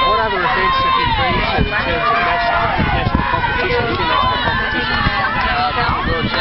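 Speech throughout: people talking close to the microphone, over a rough low rumble.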